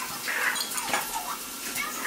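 A metal spoon spreading marinara sauce over pita breads on a wire-mesh air-fryer tray, with light scrapes and small clinks of the spoon.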